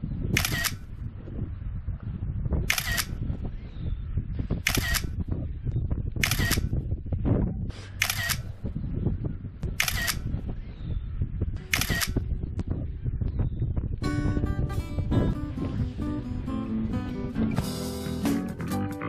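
Camera shutter sounds: seven short clicks, roughly one every two seconds, over a low background rumble. Music starts about 14 seconds in.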